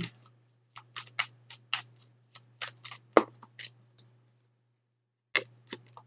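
A deck of tarot cards being shuffled by hand: a run of sharp card snaps, about two or three a second, that stops about four seconds in and starts again near the end.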